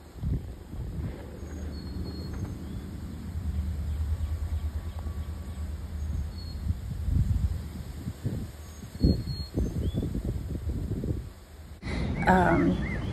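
Outdoor background with a low, uneven rumble and a few dull knocks, and several faint, short high bird chirps.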